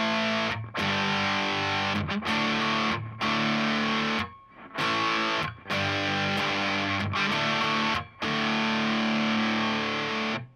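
Electric guitar with a Dean DMT Baker Act pickup (Alnico 5 magnet) played through an overdriven amp: chords struck and left to ring, with brief muted breaks between them and a longer one about halfway. The tone is smooth, with a mid-range burn.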